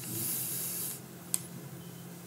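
A hissing breath forced out through the teeth, close to the microphone, lasting about a second, then a single sharp click.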